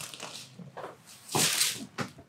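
Rustling and shuffling of a person shifting and turning over on a padded treatment table and its paper cover, with a louder rustle about one and a half seconds in.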